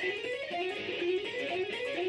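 Electric guitar playing a fast legato run of hammer-ons and pull-offs, the notes grouped in repeating three-note sequences.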